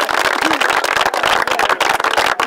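Audience applauding: many hands clapping in a dense, even patter.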